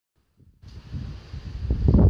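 Wind buffeting the microphone, a low rumble that starts about half a second in and grows louder.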